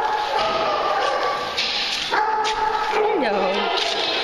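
Several dogs whining and barking together, with long held whines and a falling call about three seconds in.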